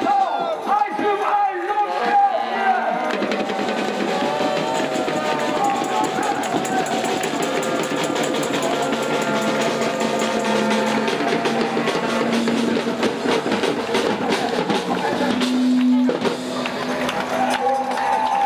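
A voice rapping into a PA microphone for the first couple of seconds. Then a crowd's voices and a street band's drums and cymbals take over, with a few long low brass notes toward the end.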